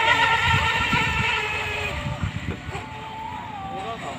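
Steady high-pitched whine of a radio-controlled speedboat's electric motor running on the water, dying away over the first couple of seconds as the boat moves off.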